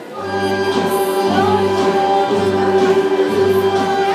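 Bulgarian folk dance music for a Misian (North Bulgarian) dance starts up: long, steady held notes over a low beat that comes about once a second.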